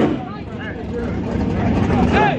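Low engine noise from drag-racing cars, with people talking in the background.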